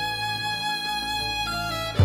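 Background score music: a long held violin note over a low drone, the melody stepping down twice near the end.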